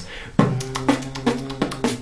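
Human beatbox with a nasal hum: a steady low hum held under a quick beat of mouth kick and snare hits and tutted tongue-click hi-hats, made by squeezing air already in the mouth through the lips while humming through the nose. It starts about half a second in and stops just before the end.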